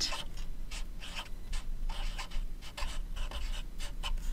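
Felt-tip marker writing on paper: a quick run of short, irregular scratching strokes as a word is lettered out.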